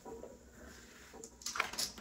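Mostly quiet, then a few faint clicks and rustles in the second half from handling a three-barrel hair waving iron in the hair as its clamp is opened.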